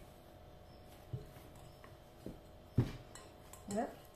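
Bread dough being kneaded and pressed by hand in a glass bowl, with a few soft knocks of the dough and hands against the glass, the loudest about three seconds in.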